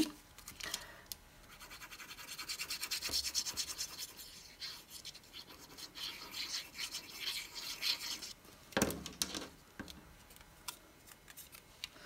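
Metal tip of a fine-tip glue bottle rubbing and scratching quickly back and forth across cardstock as liquid glue is spread, in several spells, with a brief knock about nine seconds in.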